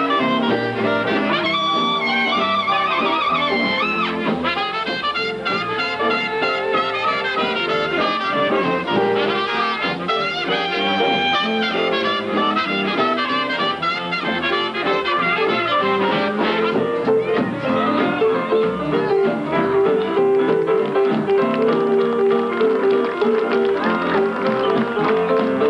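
A western swing band playing live, with trumpets and saxophone carrying the tune over electric bass.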